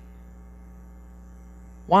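Steady low electrical mains hum on the recording during a pause in speech; a man's voice starts right at the end.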